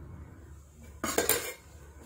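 A short cluster of light clinks and rattles of small hard parts being handled, about a second in, over a faint steady low hum.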